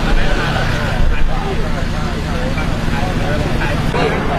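Several people talking in the background over the steady low rumble of idling vehicle engines.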